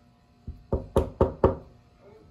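Knuckles knocking on a wooden door: one soft knock, then four sharp, evenly spaced raps, about four a second.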